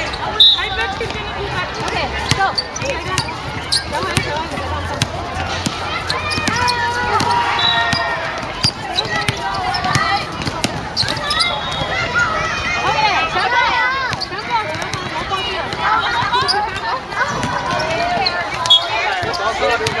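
A basketball being dribbled and bounced on a hard court, a string of sharp knocks, amid the voices of players and spectators talking and calling out.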